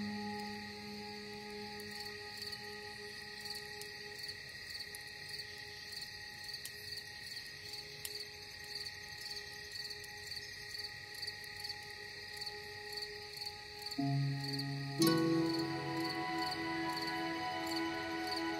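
Crickets chirping steadily in an even, pulsing rhythm over soft, sustained ambient music. The music thins to a few held tones for most of the stretch, and new chords come in near the end.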